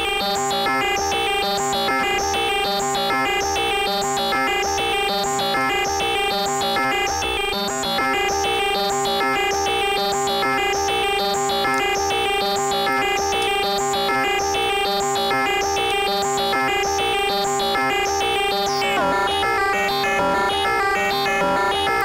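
Fonitronik MH31 VC Modulator in a Eurorack modular synth ring-modulating an oscillator tone with a triangle-wave modulator while a CV note sequence steps the pitch. It gives clangorous, metallic electronic tones in a fast repeating pattern over a steady held tone.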